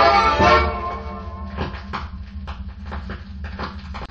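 A baião song playing from a vinyl single on a turntable fades out within the first second. After that, faint ticks come about twice a second over a steady low hum.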